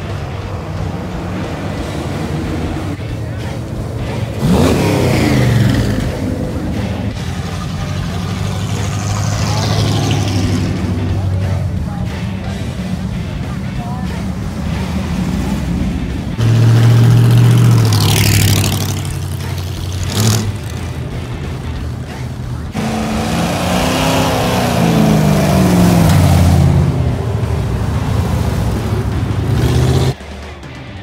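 Loud hot-rod and truck engines driving past one after another, revving as they accelerate, over a steady background rumble of idling traffic. Three passes stand out: one about five seconds in, the loudest around seventeen seconds in, and a longer one from about twenty-three to twenty-seven seconds with its pitch falling as it goes by.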